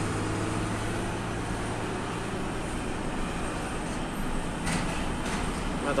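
Truck engine and road noise heard from inside the cab while driving, a steady running sound with a low hum that fades after about two seconds. A few faint clicks come about five seconds in.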